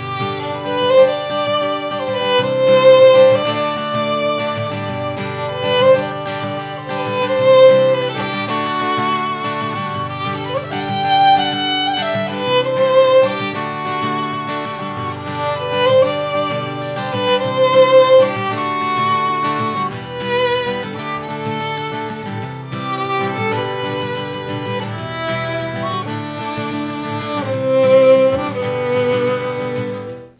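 A Mezzo-Forte carbon fiber acoustic-electric violin played through an amplifier: a slow, lyrical bowed melody of long notes with vibrato. Underneath it runs a steady accompaniment of lower chords.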